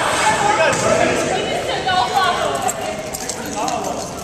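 Several people's voices talking and calling out at once in a gymnasium, with no single voice standing out, and a few footfalls on the hardwood floor.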